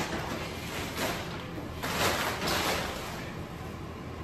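Blue sterile wrap and packaging rustling and crinkling in several short bursts as a wrapped surgical pack is handled and unfolded, over a steady low hum of room ventilation.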